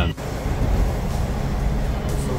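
Steady low rumble of a Toronto subway train, heard from inside the car as it runs.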